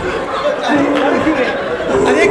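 Several men talking over one another, with no clear words.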